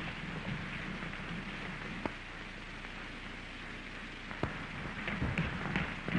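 Steady hiss of an early-1930s optical film soundtrack, broken by a couple of sharp clicks. A low rumble builds in the last second or so.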